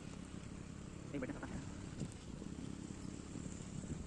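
Faint steady outdoor background noise picked up by a phone microphone, with a brief, faint distant voice a little over a second in.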